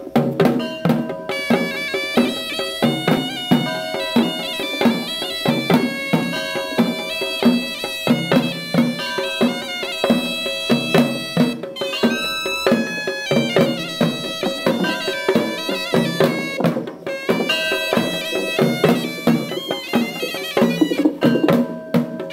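Sri Lankan procession music: a shrill reed pipe playing a winding melody over steady, repeated drum beats. The drums play alone at first and the pipe comes in about a second in.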